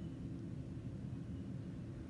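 Low, steady background noise with no distinct sounds: room tone.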